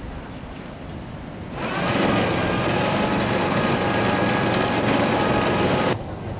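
A loud engine with a steady whine comes in about one and a half seconds in, swells over half a second, holds steady, and is cut off abruptly near the end.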